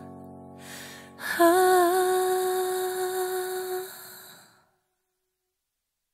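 The close of a slow Mandarin pop ballad. The accompaniment dies away, and a short breathy hiss comes just before a second in. Then one long held vocal note, hum-like with a slight waver in pitch, fades out about four and a half seconds in.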